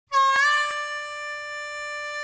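Harmonica holding one long note that bends slightly up in pitch just after it starts, opening a song.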